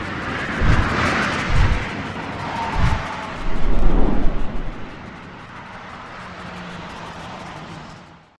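Whoosh sound effects with deep booming hits for an animated title: three low hits in the first three seconds, then a longer, louder rumble around the middle, after which a softer rushing noise carries on and dies away.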